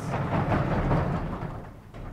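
Vertically sliding blackboard panels being pushed up along their runners: a rumbling slide that starts at once, lasts about a second and fades out.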